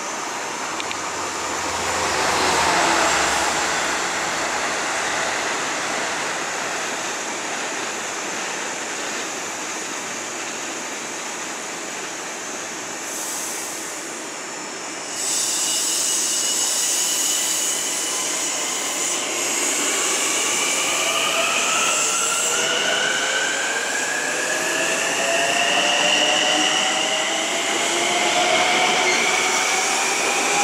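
Long Island Rail Road M-9 electric train pulling out of a station. A steady hiss sets in about halfway, then several whining tones rise steadily in pitch as the AC traction motors speed the train up.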